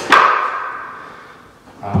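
A luxury vinyl plank clacking down onto the floor as it is snapped into place: one sharp knock with a short ringing tail that dies away over about a second.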